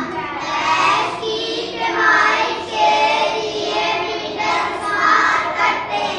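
A class of young children reading a sentence aloud together in unison, many voices in one drawn-out chorus.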